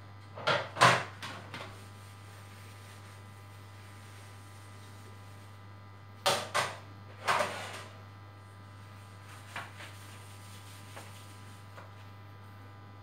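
Metal baking trays clattering as they are handled and set down on a counter: a cluster of knocks about half a second to a second and a half in, another cluster around six to eight seconds, and a few faint taps near the end, over a steady low hum.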